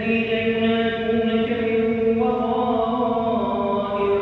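An imam's voice reciting the Quran aloud in chanted style during congregational prayer: one man holding long drawn-out notes, changing pitch a couple of times.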